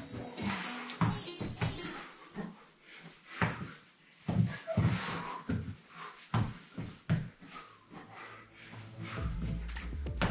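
Irregular thuds and shoe scuffs of a person repeatedly dropping onto rubber gym floor mats and scrambling back up, in a fast 'falls' exercise drill, over background music.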